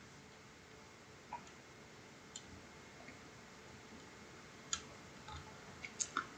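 A handful of faint, isolated clicks from a computer mouse over near-silent room tone.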